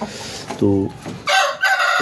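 A rooster crowing: one long call that starts about two-thirds of the way in and is still going at the end.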